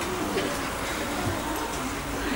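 Faint low murmur and rustling from a seated audience in a concert hall.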